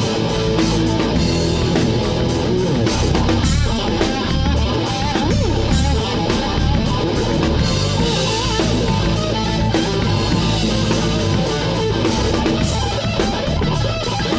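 Live rock band playing an instrumental passage with no vocals: electric guitar, electric bass and a Tama drum kit, with a guitar line wavering in pitch over a steady beat.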